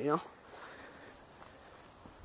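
Insects singing in the surrounding vegetation: one steady, high-pitched drone with no break.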